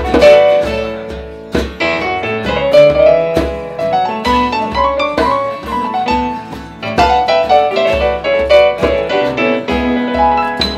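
Roland RD-700GX digital stage piano playing a melodic instrumental line in a live band, with guitars strumming underneath and a steady low pulse of a beat.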